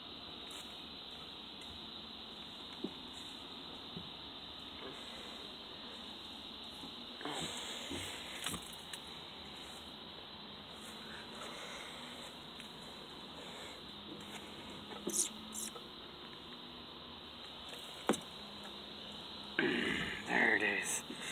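Steady outdoor background hiss with a few handling noises: short rustles and a couple of knocks as the phone moves against clothing.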